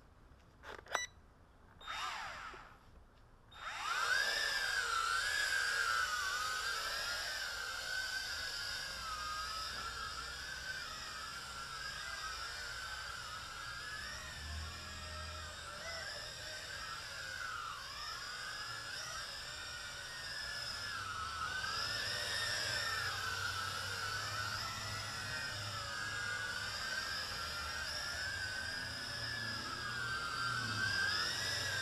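Small toy quadcopter's motors and propellers spinning up about four seconds in, after a few short beeps, then whining steadily with the pitch wavering up and down.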